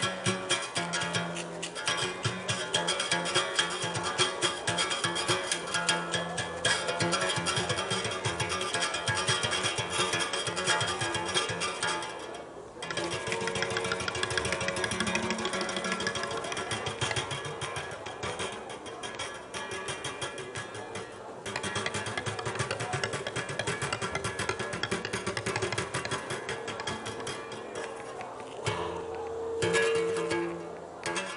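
Berimbau played solo: the stick strikes the steel wire in a fast, steady rhythm over the gourd resonator, and the note shifts between pitches.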